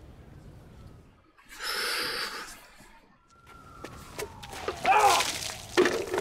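Paint dumped over a man lands as a splash lasting about a second. A few seconds later comes a short gasping vocal cry that bends in pitch.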